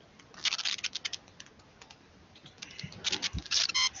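Computer keyboard typing and clicking in two quick spells, about half a second in and again from past halfway to near the end, with one soft low thump among the second spell.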